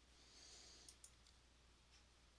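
Near silence with two faint computer mouse clicks in quick succession about a second in.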